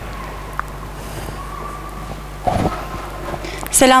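Steady low hum of an amplified sound system over faint room noise, with a short muffled noise about two and a half seconds in. A voice starts speaking right at the end.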